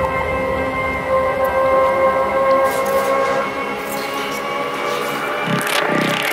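Electronic IDM/glitch music: a held synth chord of steady tones, with the low bass dropping away about halfway through and a rising hiss building near the end into the next section.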